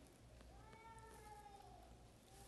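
Near silence: room tone in a large hall, with one faint high-pitched squeak or call lasting about a second that dips slightly in pitch at its end.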